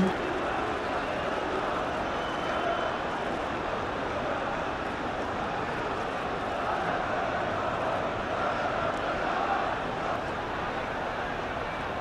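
Steady crowd noise from a large football stadium, an even roar of many voices with no single event standing out.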